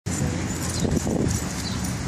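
Dogs growling as they wrestle in a fight, a German Shepherd among them, with a few stronger growls about a second in.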